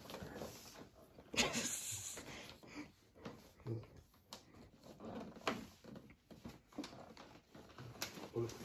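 Scattered light rustles and knocks of a gift-wrapped cardboard box being handled, with one louder crinkling rustle about a second and a half in.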